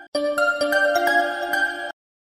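Mobile phone ringing with a melodic ringtone, a short tune of steady notes. The tune restarts just after the start and cuts off suddenly near the end as the call is taken.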